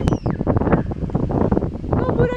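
Wind buffeting the microphone: a rough, uneven rumbling noise, with one sharp click just after the start.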